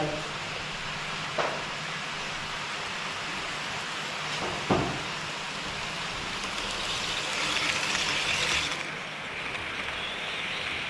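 HO-scale model train (electric locomotive with car-carrier wagons) running on KATO Unitrack past close by: a rolling hiss that builds, peaks about eight seconds in and drops off sharply just before nine. Two sharp clicks come earlier, one about a second and a half in and a louder one near five seconds.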